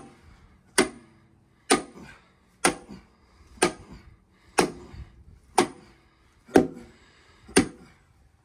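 Steel hand sledgehammer striking the top of a four-foot length of half-inch rebar, driving it through the first 6x6 treated timber into the ground: eight evenly spaced blows about one a second, each with a brief metallic ring.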